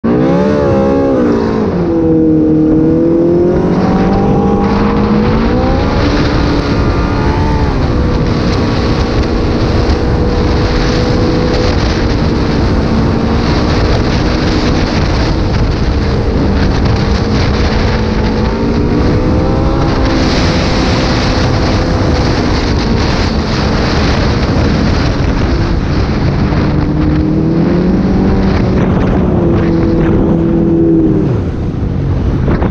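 Yamaha Apex GT snowmobile's four-cylinder four-stroke Genesis engine running under way on a trail, its pitch climbing and dropping several times with the throttle and holding steady for long stretches, over wind and track noise.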